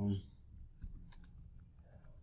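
Typing on a computer keyboard: a string of irregular key clicks.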